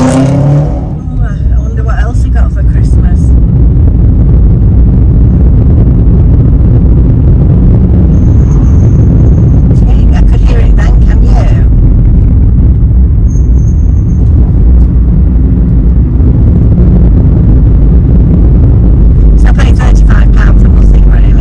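Interior noise of a car being driven through town: a steady low rumble of engine and tyres on the road. Two brief, faint high-pitched whistles sound over it, about eight and thirteen seconds in.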